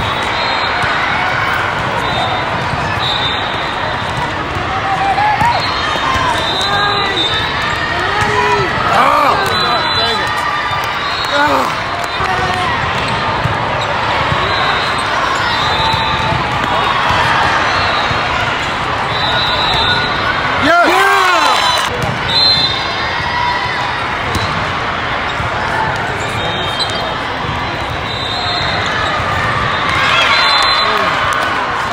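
Indoor volleyball in a large, echoing hall: volleyballs being struck and bouncing amid a constant crowd din, with short high whistle blasts coming again and again from the courts. Players and spectators shout and cheer through it, with a louder burst of shouting about two-thirds of the way through.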